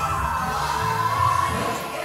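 Live band playing a 90s R&B cover: a steady bass line under a long held melody note.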